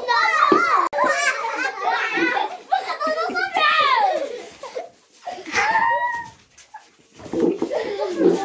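A group of children's high-pitched voices shouting and chattering over one another in excitement, the sound cutting out for an instant about a second in.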